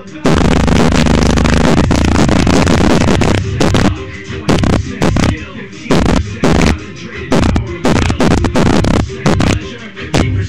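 Hip hop track played at maximum volume through a Logitech Z-623 2.1 speaker system, its subwoofer pushing heavy bass. A dense, loud stretch for the first three seconds or so gives way to hard beats about twice a second.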